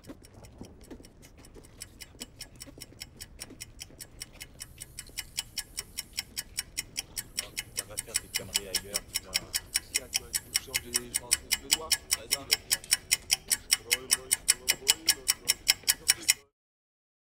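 A clock ticking quickly and evenly, about three ticks a second, growing steadily louder, over faint muffled voices. The ticking cuts off suddenly at the end.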